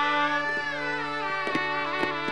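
Shehnai playing a slow melodic phrase in raga Alhaiya Bilawal, its line rising and then falling in smooth glides, over a steady held drone. A single light tap sounds about one and a half seconds in.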